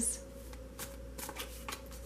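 Tarot cards being shuffled and handled in the hands, a few soft irregular card slaps.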